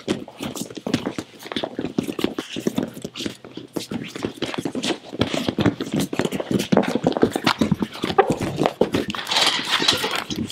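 Bare feet stamping and shuffling on gym mats as two men grapple and scramble, a quick, irregular run of thuds and scuffs.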